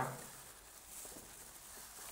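Faint rustling of plastic-gloved hands handling vine leaves, barely above room tone, with a slight hiss about a second in.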